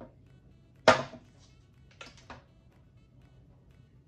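Hard plastic and glass knocks on a glass tabletop as a blender jar and a full smoothie glass are set down and handled: one sharp knock about a second in, then three quick lighter clicks a second later.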